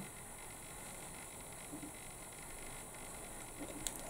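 Faint steady background hiss of room tone, with a faint click near the end.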